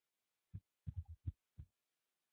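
Faint, muffled low thumps, about six in quick succession starting about half a second in, picked up by a desk microphone.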